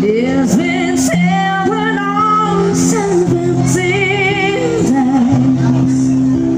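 An acoustic duo performing a song: a voice sings long notes with vibrato over sustained accompaniment chords.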